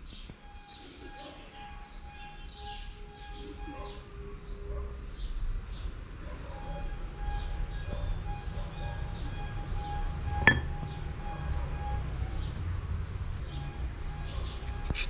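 Small birds chirping over and over in short high calls, with a single sharp click about ten seconds in.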